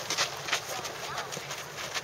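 Children's feet scuffing and stepping on a hard dirt pitch, with taps of a football being kicked and dribbled at close range, coming as a loose irregular series of short knocks.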